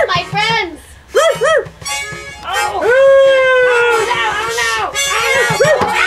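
Puppeteers' voices making quick, repeated yapping animal calls, with a long held cry about halfway through, over harmonica accompaniment.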